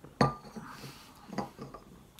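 A small ceramic cup set down with one sharp clink, followed by a soft rustle and a few lighter knocks.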